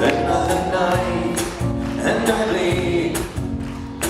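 Live acoustic band music: acoustic guitar and drums with cymbals, and singing over them.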